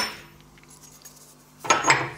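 Mostly quiet, then near the end a short clatter of steel on steel as a bender plate is slipped into place on a UB100 bar bender.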